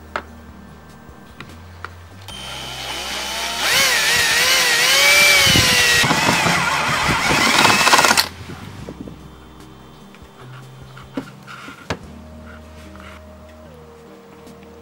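Cordless drill with a stepped drill bit boring a hole through a thin metal bracket. It runs for about six seconds from two seconds in, its pitch wavering as the bit cuts, then stops abruptly.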